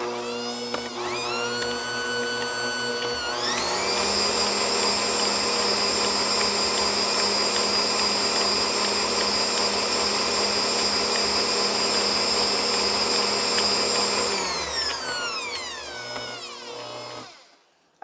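Bosch Compact Kitchen Machine stand mixer beating melted chocolate into cake batter: the motor whines up to speed about a second in, steps up to a higher speed about three seconds in and runs steadily, then winds down and stops near the end.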